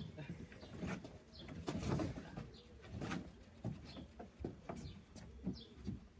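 Irregular knocks and scuffs of two boxers' feet and gloves on a wooden deck during sparring, with a bird calling in the background.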